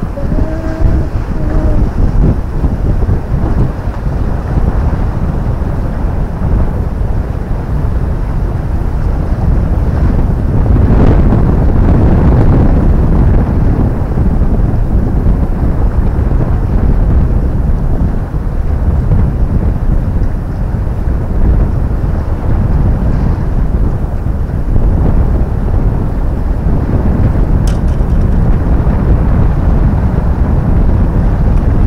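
Wind buffeting the microphone: a loud, low rumbling noise that runs on without a break and swells in a stronger gust about a third of the way in.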